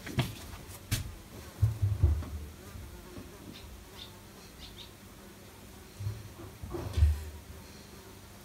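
Soft handling sounds as a plush toy pony's mane and plaiting bands are handled on a counter: a few light clicks, then low dull thumps about two seconds in and again near the end, the last the loudest.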